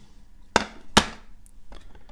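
Hard plastic graded-card slabs clacking together as they are set down and stacked: two sharp clacks about half a second apart, then a couple of faint ticks.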